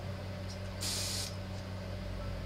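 Airbrush fed by compressed air, trigger pressed once for a short hiss of air about a second in, lasting about half a second, blown through the empty airbrush to show it is clean. A steady low hum runs underneath.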